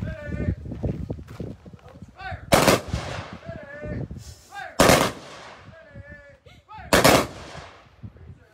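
Honor guard's rifles firing a three-volley salute: three sharp volleys a little over two seconds apart, each ringing off briefly after the shot.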